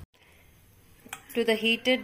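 Low, even room tone with a single faint click about a second in, then a woman starts speaking.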